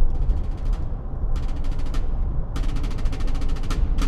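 Road and engine noise inside a moving car's cabin, a steady low rumble, with three bursts of rapid rattling ticks in the first second, near the middle and in the second half.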